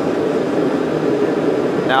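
Propane forge burner running with a steady rush of flame, the air just turned down slightly at its gate valve to correct the air-fuel mixture, so a disrupted burn is becoming more stable. A man's voice starts a word at the very end.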